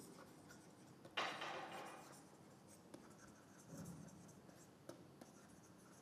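Faint scratching and light taps of a stylus writing on a tablet, with one longer stroke about a second in followed by a few short ticks.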